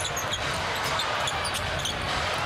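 A basketball being dribbled on a hardwood court over steady arena crowd noise, with short high sneaker squeaks scattered throughout.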